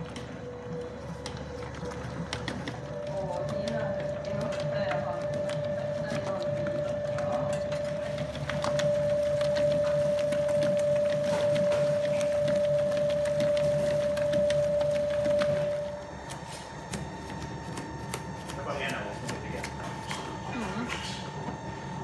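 Bear planetary mixer running with a steady motor whine. The whine steps up in pitch about three seconds in, grows louder a few seconds later, and stops about sixteen seconds in. The mixer is working salted raw fish into fish-cake batter while milk is poured in.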